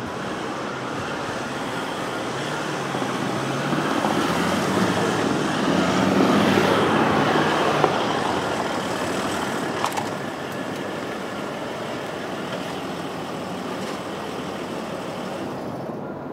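Mercedes-Benz S-Class sedan driving in and pulling up over cobblestones: engine running with tyre noise. The sound swells to its loudest about six seconds in, then settles to a steady level, with a short click or two near the middle.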